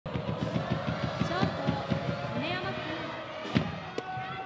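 Baseball stadium ambience: a fast, even drum beat of about five low thumps a second under shouting voices, then a single sharp crack about three and a half seconds in.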